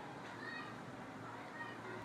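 A few faint, short, high-pitched animal calls, each a brief arching tone, heard over a quiet background hiss.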